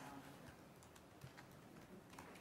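Near silence: faint room tone with a few scattered light clicks of laptop-keyboard typing.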